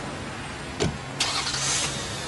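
A car door shuts with a single thump a little under a second in, then the car's engine starts with a short hissing whirr and settles into a steady low idle.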